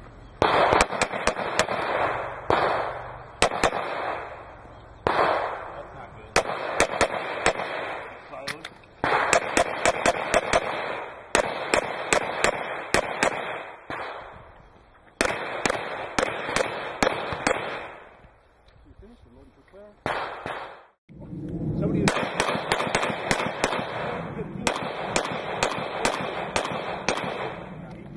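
Semi-automatic pistol fire in rapid strings of several shots each, separated by short pauses, with a lull of a couple of seconds about eighteen seconds in before more strings follow.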